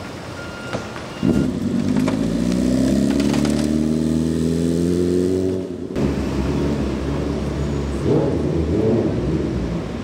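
A motor vehicle's engine accelerating. Its note comes in suddenly about a second in, climbs steadily in pitch for about four seconds, then cuts off abruptly. A rougher, unsteady low rumble follows.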